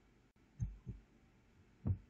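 Three soft, low thuds over faint room tone: two about a third of a second apart just over half a second in, and a third near the end.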